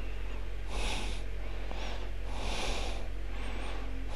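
A man breathing heavily in hissy, laboured breaths, three of them about a second and a half apart, the breathing of a man who is wounded and bleeding from the mouth. A steady low hum and a few faint short chirps lie underneath.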